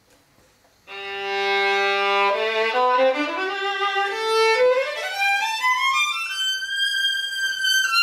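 An old German Stainer-model violin bowed solo. After about a second of quiet it holds a long low note, then climbs in steps and slides to a high note held near the end.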